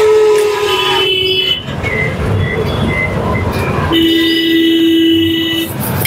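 Two long vehicle horn blasts from passing road traffic, the first at the start lasting about a second and a half, the second lower in pitch and about two seconds long from around four seconds in, over a steady din of traffic and butter sizzling on a hot griddle.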